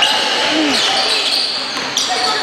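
A basketball being dribbled on a hardwood gym floor. Sneakers squeak and voices call out in the echoing hall.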